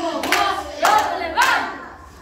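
Group of children singing with rhythmic hand claps, about two a second. The claps stop and the singing fades away near the end.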